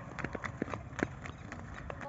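Faint, irregular thuds of footfalls on the ground as people run a foot race.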